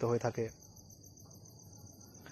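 Crickets chirping faintly in the background as a steady, high-pitched trill. A man's voice speaks in the first half second, then stops.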